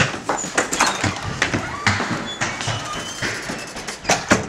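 A rapid, uneven run of knocks and bangs as furniture in a small room is kicked and knocked about, with a voice mixed in.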